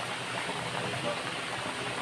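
A pot of soup broth at a rolling boil, bubbling steadily.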